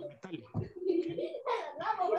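A person's voice over a video call, drawing out a low vowel while practising the English question word "how".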